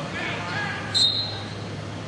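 A referee's whistle gives one short, shrill blast about a second in, restarting the wrestling bout, over crowd noise and voices in a large hall.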